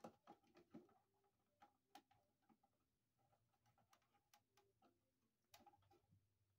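Faint, irregular clicks and scrapes of a screwdriver driving the screws that hold a cover plate onto a GFI receptacle. They bunch in the first second and again near the end.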